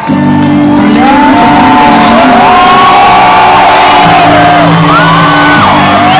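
A rock band playing live and loud, kicking in suddenly at the start: sustained low chords under steady cymbal hits, with shouts and whoops over the top.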